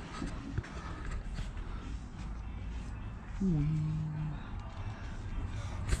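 Quiet workshop background with a low, steady rumble and a few faint clicks. About three and a half seconds in, a person makes a short hummed sound lasting about a second.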